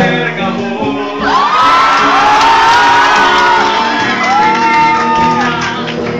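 Live acoustic band: a male singer holds long, high sung notes into a microphone over strummed acoustic guitars, twice in a row, while the audience shouts and whoops.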